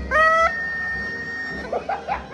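Cone-shaped foil party horn blown: a loud blast that rises in pitch and then holds for about half a second, followed by a thin, steady higher tone lasting about a second.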